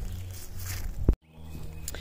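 Footsteps on dry straw mulch and leaves over a steady low rumble, with one sharp click just after a second in and a brief gap in the sound right after it.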